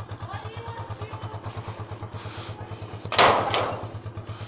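Honda TMX155 single-cylinder motorcycle engine idling with a steady, even low pulse. About three seconds in there is a short, loud rushing scrape.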